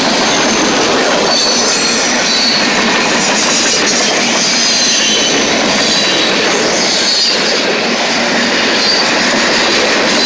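Norfolk Southern freight cars rolling past at close range: a loud, steady rumble and roar of steel wheels on rail, with thin high-pitched wheel squeals coming and going over it.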